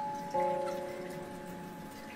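Background music of soft held notes; a new chord comes in about a third of a second in and rings on, slowly fading.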